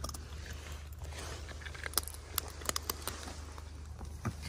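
Raccoons chewing and cracking almonds in the shell, with a few sharp crunches about halfway through.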